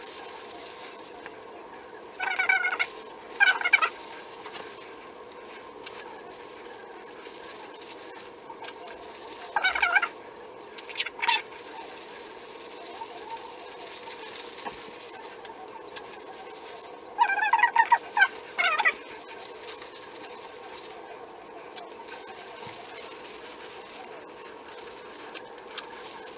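Short, wavering animal calls in three clusters of two or three, about two, ten and eighteen seconds in, over a steady hum.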